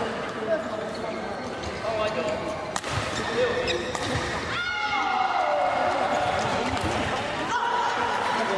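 Sports hall sounds during an amateur badminton doubles game: background chatter from people around the courts, a sharp knock about three seconds in, and sneakers squeaking on the court floor in the second half as the players move into a rally.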